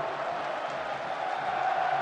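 Football stadium crowd noise, a steady even din with no single sound standing out.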